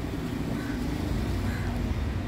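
Steady low rumble of city street background noise, an even hum with no distinct events.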